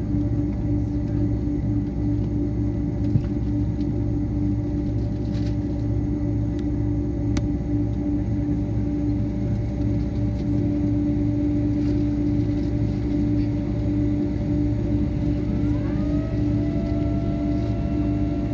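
Steady cabin drone inside a Boeing 767-300ER on the ground, a low rumble with a constant hum. About two seconds before the end, a whine rises in pitch and then holds steady.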